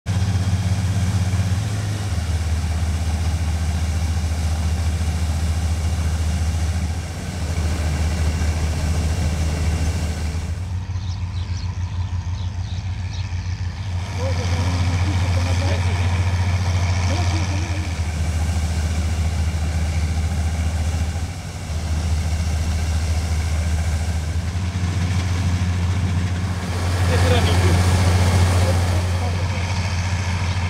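Combine harvester running, a steady deep engine drone, the sound shifting abruptly in level and tone every few seconds.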